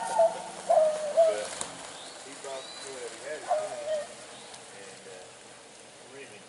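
Rabbit-hunting hounds giving short, wavering, high-pitched yelps, several in the first four seconds.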